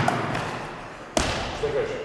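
A basketball striking once, hard, a little over a second in, with the long echo of a bare gym hall; a faint knock comes just at the start.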